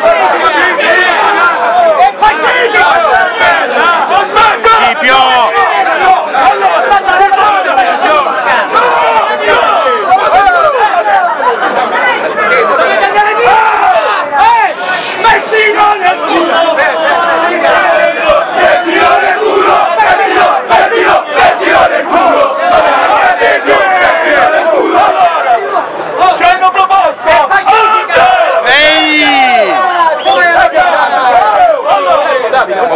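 A large crowd of protesters shouting together, many voices at once, loud and continuous, with scattered sharp cracks through the din.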